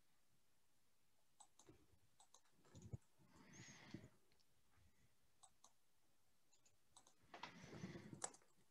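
Near silence, with faint scattered clicks of a computer keyboard and mouse and a soft rustle about three and a half seconds in and again near the end.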